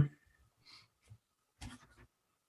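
A man's drawn-out hesitant "um" trailing off at the start, then a thinking pause of low room tone with a few faint mouth and breath noises, one short one about three-quarters of the way through.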